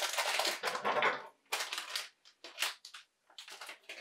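Plastic minifigure blind bags being crinkled and torn open by hand: a dense crackle for about the first second, then scattered short crinkles.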